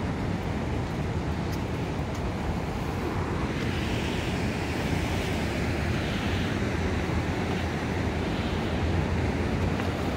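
Wind buffeting the microphone over the steady rush of a fast-flowing river, the rushing hiss of the water growing louder a few seconds in.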